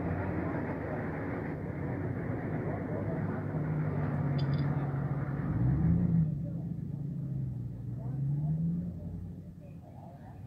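A car engine running close by, its pitch rising and falling, over a steady rumble of street noise. The rumble drops away about six seconds in.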